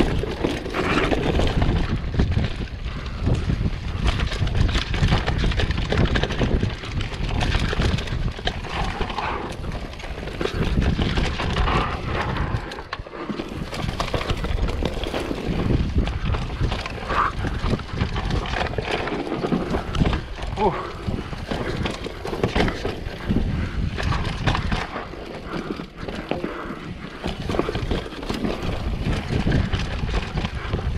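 Downhill mountain bike ridden fast down a dusty, rooty dirt trail: a steady rush of tyre and wind noise with constant rattling knocks from the bike over the bumps.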